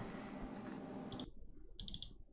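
Faint computer mouse clicks, a click about a second in and a couple more near the end, over a low hiss of room tone.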